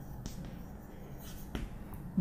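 Chalk on a chalkboard as a word is written: light scraping with two sharp taps, a faint one near the start and a louder one about one and a half seconds in.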